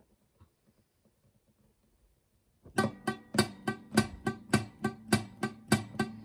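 Acoustic guitar strummed in a steady, even rhythm, starting about two and a half seconds in after a near-silent pause.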